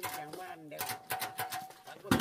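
Brass cookware being handled: a quick run of about six light metallic clicks with a steady ringing tone behind them, as a large brass pot lid is lifted and set down.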